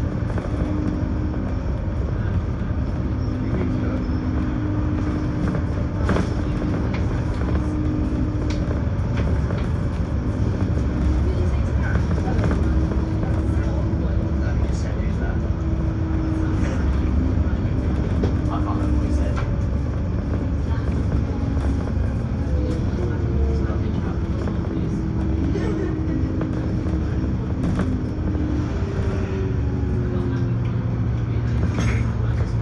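Inside a VDL DB300 double-decker bus on the move: a steady low diesel engine and road rumble, with a drivetrain whine that holds and shifts pitch a few times as the bus changes speed, and occasional rattles and clicks from the body.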